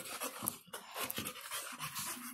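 A dog panting in a quick run of short breaths.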